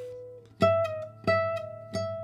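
Nylon-string flamenco guitar playing slow, single plucked notes high up the neck: three notes about two-thirds of a second apart, each left to ring.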